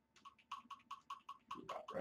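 A quick, even run of about fifteen computer keyboard key taps, some seven or eight a second: arrow keys pressed repeatedly to nudge a selected object a little at a time.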